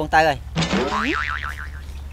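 Cartoon 'boing' spring sound effect: a wobbling, warbling tone that starts suddenly about half a second in and dies away over about a second.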